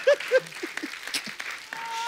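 Studio audience laughter and applause after a punchline. A rhythmic 'ha-ha' laugh trails off in the first second over the clapping, and a short steady tone sounds near the end.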